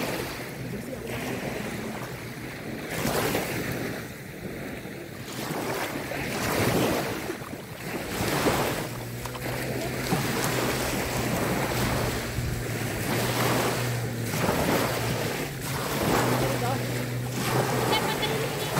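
Small waves breaking and washing up on a sandy shore, the surf noise swelling and fading every few seconds, with some wind on the microphone. A steady low hum joins about halfway through.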